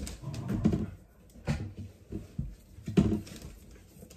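Four-week-old Australian Labradoodle puppies whimpering and whining in a series of short separate bursts, the loudest about three seconds in.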